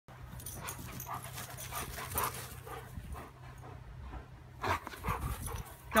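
Dogs panting in quick, even breaths, about two a second, louder near the end.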